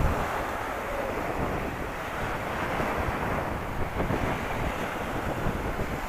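Small sea waves breaking and washing up a pebble beach in a steady surf, with wind buffeting the microphone.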